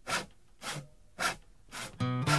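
Song intro on a record: short scraping percussion strokes in an even beat, about two a second, with no other instrument yet.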